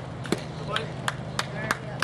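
Hand claps close to the microphone: six sharp claps, the last five evenly at about three a second, cheering the batter on.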